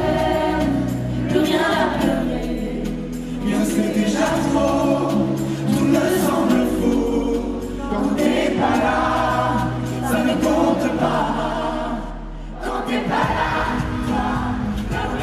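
Live pop music: a man's and a woman's voices singing long, held lines over a backing track with sustained bass notes, heard from within the audience.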